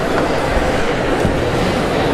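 Steady murmur of many indistinct voices in a large hall: an audience chatting between pieces while the orchestra resets the stage.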